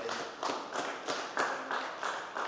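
Audience applauding, a dense patter of hand claps.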